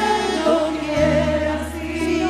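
A church choir singing a hymn over a steady, sustained low accompaniment.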